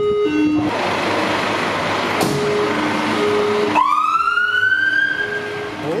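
Fire engine siren: a two-tone high-low pattern under a rushing hiss, then, about two-thirds of the way through, a wailing tone that rises in pitch and holds.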